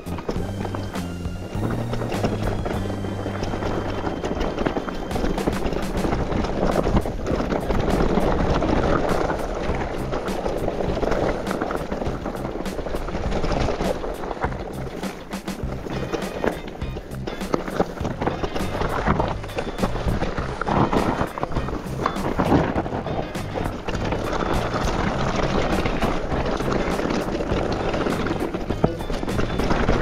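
Background music with a bass line of held low notes, mixed with the clicks and knocks of a mountain bike rattling over a rough trail.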